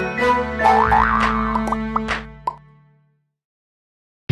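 Playful intro jingle music with quick rising pitch-glide sound effects and a few short pops, fading out to silence about three seconds in.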